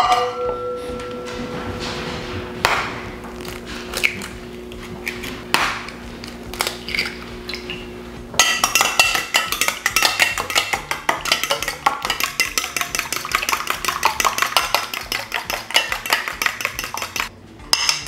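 A stainless steel mixing bowl is set down with a clank and rings on. A few separate knocks follow as eggs are cracked into it. From about eight seconds in, a fork whisks the eggs in rapid clicks against the steel bowl, stopping just before the end.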